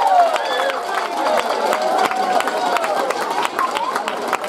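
Audience clapping and cheering, with many voices calling out over one another and a stream of sharp hand claps.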